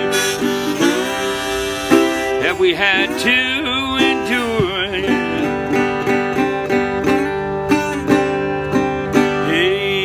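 Metal-bodied resonator guitar played with a slide in Delta blues style, notes gliding into pitch and ringing on. A rack-mounted harmonica plays wavering notes over it at times.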